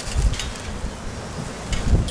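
Uneven low rumble of wind buffeting the microphone, with a few faint clicks.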